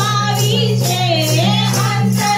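A woman singing a devotional bhajan into a microphone over a sound system, her voice gliding through a long ornamented phrase. Hand claps keep a steady beat, with low steady tones held beneath.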